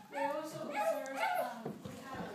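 Wordless vocal sounds from a young child: a few short, high-pitched cries.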